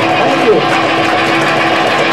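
Loud, distorted live-club sound: a voice heard over a steady wash of noise, with a brief sliding cry about half a second in.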